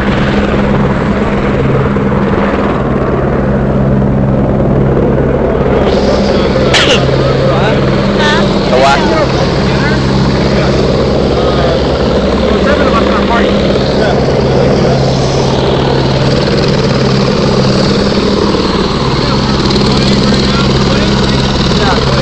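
Helicopter running on the pad: a loud, steady drone with a low hum.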